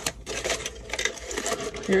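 Aluminium foil wrapped around a burrito crinkling as it is handled and opened, a quick run of crackles.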